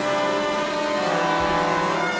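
A full symphony orchestra playing loud, sustained chords, with a low thud about one and a half seconds in.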